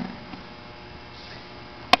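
Steady electrical mains hum from the microphone and sound system in a pause between lines, with one sharp click near the end.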